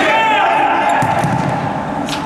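Indoor futsal play in an echoing sports hall: the ball thuds as it is kicked and bounces on the court, with a few short high squeaks near the start and players' voices.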